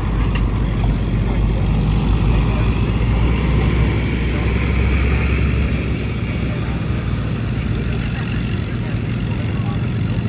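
Pickup truck engine running steadily while hooked to the pulling sled at the start line. It is a little louder for the first half and eases off slightly about six seconds in.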